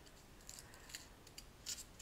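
Faint, crisp clicks and light rustling as a small finished cross-stitch ornament, with a flower and twine bow on top, is turned over in the hands.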